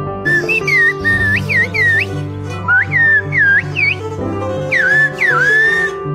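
Whistled Turkish (kuş dili), whistled with fingers in the mouth: three groups of sharp, high, swooping whistles that rise and fall, carrying the message 'Can you bring me two loaves of bread, please?'. Soft background music plays underneath.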